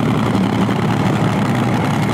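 Supercharged nitro-burning V8 of a front-engine top fuel dragster running at idle with a steady, loud, crackling low rumble. The car is in trouble, which the commentators think may be a throttle stop fault.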